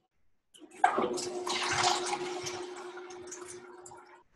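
A rush of water with a steady low hum running through it, starting suddenly about a second in and slowly fading.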